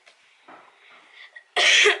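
A girl coughs once, a single short cough about one and a half seconds in.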